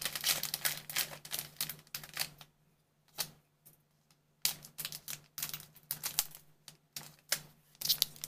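Trading cards being handled: quick runs of sharp clicks and snaps as cards are flicked through and stacked, with a pause of about two seconds a little before the middle.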